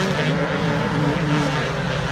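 Several 250cc four-stroke motocross bikes running around the track together, their engines blending into one steady, loud drone.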